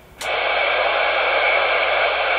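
Steady static hiss from a Ranger 2950 radio's receiver, coming on abruptly about a quarter second in as the channel opens, with no voice on it.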